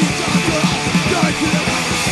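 Punk rock recording playing: distorted electric guitars over fast, driving drums.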